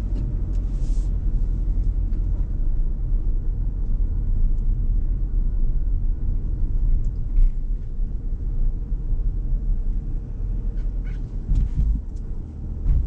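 Steady low rumble inside the cabin of a Proton Iriz with a 1.6-litre petrol four-cylinder and CVT: engine and tyre noise while driving.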